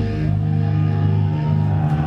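Live stoner-rock trio: distorted electric guitar and bass holding long, ringing low notes, with little cymbal.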